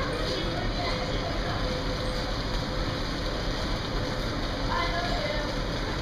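Steady rushing wind across an open ship deck, buffeting the microphone, with faint distant voices.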